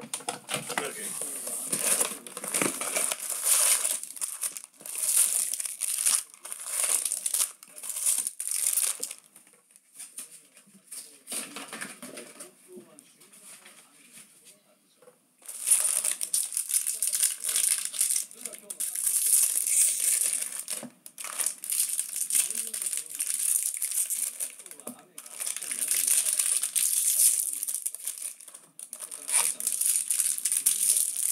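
Foil wrappers of Bowman Draft baseball card packs crinkling in repeated bursts as the packs are handled and torn open, with a quieter spell in the middle.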